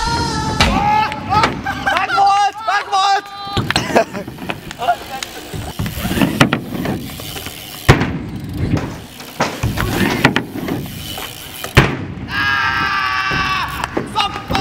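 Riders' voices talking and calling out, with several sharp bangs of a BMX bike hitting a skatepark ramp.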